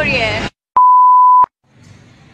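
A single electronic beep, one steady pure tone lasting under a second, switched on and off abruptly with a click at each end, set in silence after a woman's voice breaks off.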